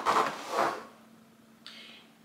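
Cardboard box being handled: a scraping rustle of cardboard for most of the first second, then a brief rustle near the end.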